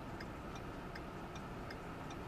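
Car turn-signal indicator ticking steadily, about two and a half clicks a second, over a low hum inside the car cabin.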